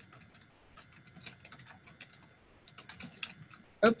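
Computer keyboard typing: a run of faint, irregular key clicks as a word is typed.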